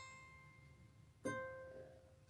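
Acoustic guitar: a single high note, plucked just before, rings and fades, then the same note is plucked again about a second and a quarter in and left to ring out.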